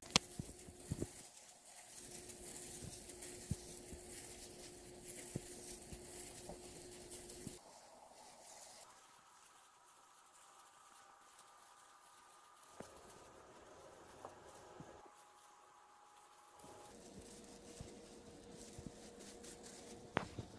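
Faint rubbing and patting of plastic-gloved hands smoothing and wrapping a wet cast bandage on a leg, with a few soft clicks.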